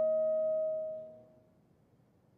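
Alto saxophone and piano sustaining the final chord that ends a movement, a steady held note that tapers and dies away a little over a second in.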